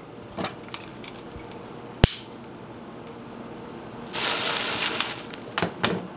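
Wooden matches struck and lit: a sharp click about two seconds in, then the hiss of the match heads flaring for over a second, followed by a couple of small ticks.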